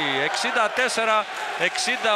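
A male sports commentator speaking in Greek, calling the score, with the court sounds of a basketball game faintly beneath him.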